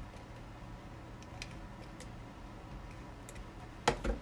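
Quiet handling of paper and card on a craft table: a few faint light clicks, then one sharper tap just before the end, over a low steady hum.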